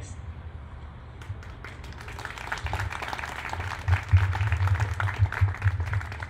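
Audience applauding: scattered claps start about a second in and swell into steady clapping.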